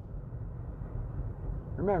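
Steady low rumble of road and engine noise inside a car's cabin while it drives at freeway speed.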